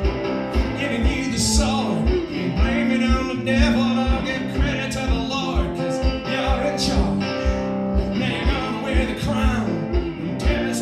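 Acoustic guitar played lap-style with a slide, notes gliding between pitches, over a steady kick-drum beat of about two low thumps a second.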